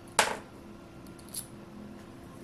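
A sharp metallic click about a quarter second in, then a fainter tick about a second later: small metal parts of a universal motor being handled and fitted together by hand.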